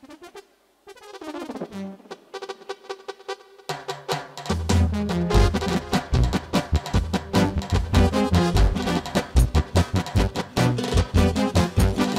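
Dance band music starting up: a lighter brass-led opening about a second in, then drums and bass come in with a steady, heavy beat a few seconds later.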